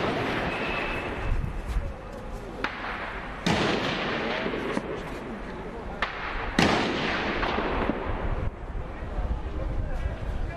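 Two loud bangs about three seconds apart, each followed by a long echoing tail, with a few fainter pops before them.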